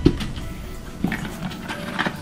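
Soft background music, with a sharp knock right at the start and a lighter one about a second in from items being handled.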